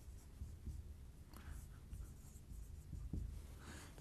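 Dry-erase marker writing on a whiteboard: a few faint, short strokes.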